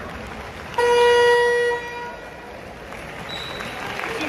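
Basketball arena horn sounding one steady blast, about a second long, over the murmur of the crowd in the hall.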